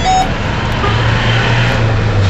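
City bus engine running with road noise, heard from inside the bus cabin. A low engine hum grows stronger about a second in.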